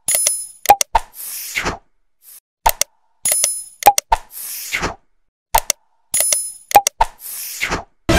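Like-and-subscribe animation sound effects: sharp mouse-click sounds, a short ding and a quick whoosh, the set repeated three times about every three seconds.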